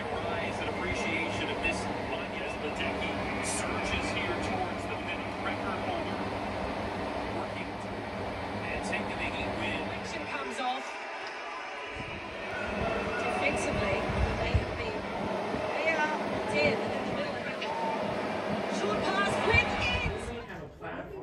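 Olympic TV broadcast sound of a swimming race playing through a television speaker: steady arena crowd noise with indistinct voices, none of the commentary clear. The sound thins out briefly about halfway through, then picks up again.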